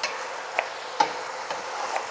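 Kitchen knife slicing ginger on a cutting board, sharp taps about every half second, over the steady sizzle of chicken browning in a pot.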